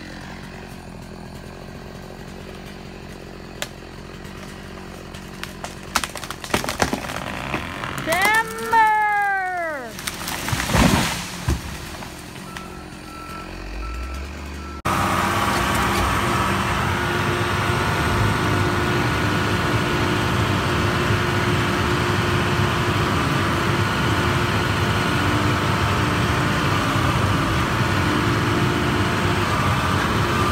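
A chainsaw idling faintly, then a run of sharp cracks, a long squeal that rises then falls in pitch, and heavy thuds about ten seconds in, as a tree comes down. After a sudden cut about fifteen seconds in, a log loader's engine runs loud and steady, heard from inside its cab.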